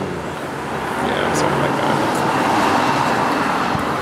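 Road traffic noise from a passing vehicle: a rushing sound that swells from about a second in, peaks a little past halfway, then eases off.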